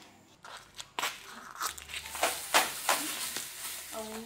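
Short hand broom of bundled stalks sweeping a hard floor: a quick run of brisk swishes starting about a second in.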